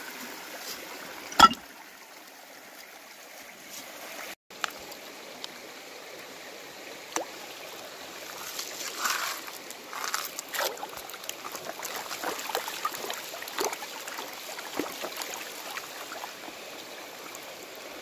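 Shallow creek water running over rocks, with one sharp knock about a second and a half in. From about eight seconds on, water sloshes and gravel rattles as a green plastic gold pan full of gravel is swirled and worked under the creek's surface.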